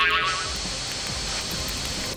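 Steady hissing of a cartoon fire-and-smoke sound effect, beginning right after a brief wavering high tone and cutting off suddenly near the end.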